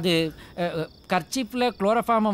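A man's voice in short, rapid, broken syllables, with a faint steady high chirping of crickets behind it.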